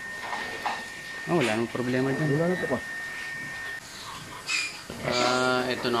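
Indistinct voices speaking with rising and falling pitch, and one held vocal sound near the end, over a faint steady high whine that stops about four seconds in.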